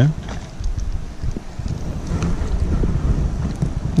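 Low, steady rumbling noise of wind and handling on the camera microphone, with faint irregular ticks.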